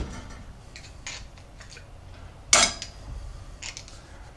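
Small metal parts clinking lightly as they are handled and set down on a workbench, with one louder metallic knock about two and a half seconds in.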